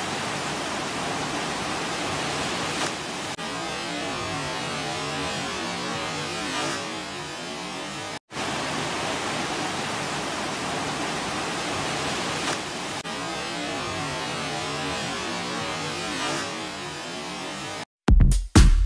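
FlowRider sheet-wave machine's water rushing steadily over the ride surface: an even whooshing noise that cuts out for a moment about eight seconds in.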